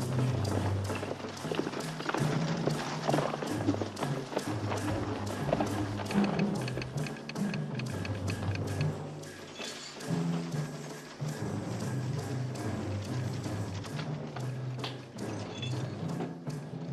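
Orchestral western film score: a low bass line stepping between notes under a steady, fast percussive beat.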